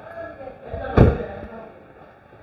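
The driver's door of a 2014 Toyota Fielder station wagon being slammed shut once, about a second in.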